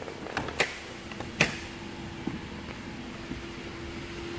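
A few sharp clicks and light knocks from the open driver's door and cabin trim as someone climbs out of the minivan, the loudest about a second and a half in. A faint steady hum runs underneath from just over a second in.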